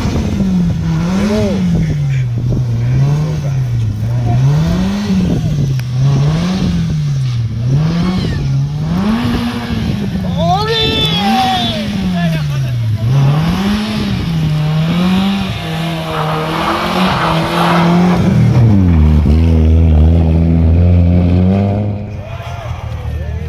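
Rally car engine revving up and down in a steady rhythm, about once every second and a half, as the car sits stuck in deep snow with people pushing it, while voices shout. Near the end the revving gives way to a lower, steady and louder engine note.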